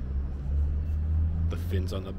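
A low, steady rumble that swells during the first second and a half. A man's voice starts near the end.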